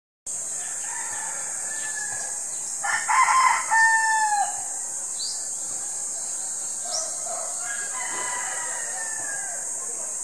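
A rooster crowing once, loud, for about a second and a half starting about three seconds in, its last note held and falling away. Fainter calls come before and after it.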